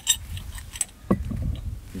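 Brass swing check valve handled in the hands: its hinged flap clicks against the metal body in a few sharp metallic clicks, with a short knock about a second in. Low wind rumble on the microphone throughout.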